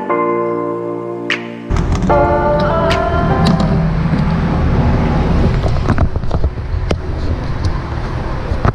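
Background music that cuts away about two seconds in to a steady low outdoor rumble. Over the rumble come scattered sharp clicks and taps as the car's fuel cap is put back and the fuel filler door is pushed shut.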